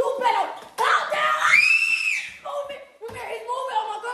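A person's high-pitched scream, held for about a second, between bursts of excited, shouted speech.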